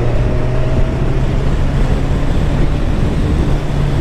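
1987 Kawasaki ZL1000's four-cylinder engine pulling in fifth gear as the bike accelerates from about 45 to 65 mph, its steady note stepping up a little in pitch near the end. Heavy wind rush over the microphone from riding at speed.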